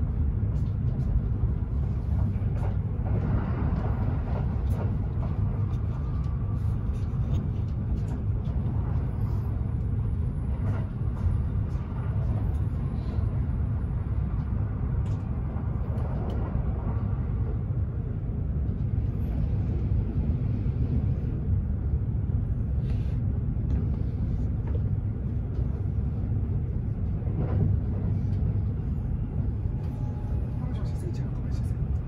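Steady low rumble of a Kintetsu 80000 series 'Hinotori' limited express train running at speed, heard from inside the passenger cabin, with faint clicks from the wheels on the track.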